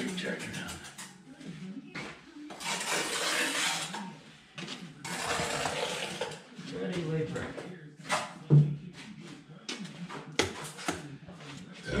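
Steel mason's trowel scraping through wet mortar twice, each stroke lasting over a second, followed by sharp taps and one heavier knock as a brick is set and tapped into its mortar bed.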